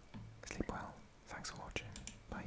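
A man whispering softly, a few short breathy sounds.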